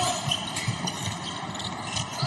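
Arena crowd noise during a basketball game, with a few low thuds of the ball bouncing on the hardwood court.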